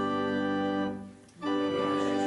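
Organ playing the hymn's introduction: a held chord releases about a second in, and after a short break a new chord starts.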